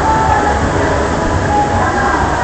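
Log flume ride: a steady rumbling rush of water flowing through the channel around the moving boat.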